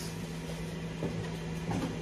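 A steady low hum under faint, even background noise.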